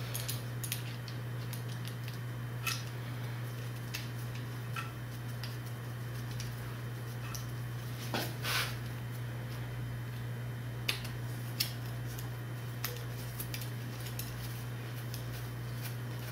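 Light metallic clicks and clinks of stainless steel hard lines and their AN fittings being handled and loosely fitted into an aluminium centre block. A steady low hum runs underneath, and the loudest clinks come about eight seconds in.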